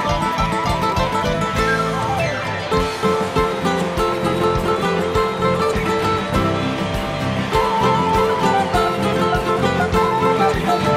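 Instrumental break of a live Andean huayno played by a band: a nylon-string guitar plucking the melody over drums and bass with a steady beat.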